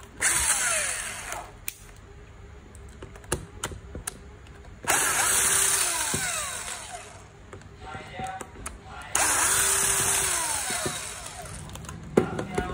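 Small cordless electric screwdriver running in three bursts, each about one and a half to two seconds long, as it backs screws out of a metal gearbox housing. There are a few light clicks between the bursts.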